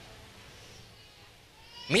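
A pause in a man's amplified speech: faint hall room tone with the tail of his voice dying away, and his voice starting again near the end.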